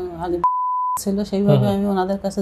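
A single steady electronic bleep, about half a second long, dubbed over and cutting out a woman's speech, as done to mask a word. She talks on either side of it.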